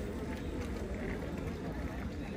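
Outdoor quayside ambience: a steady low rumble with faint voices of people passing.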